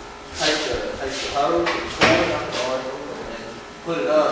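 A young man talking indistinctly in a large shop room, with one sharp knock about halfway through.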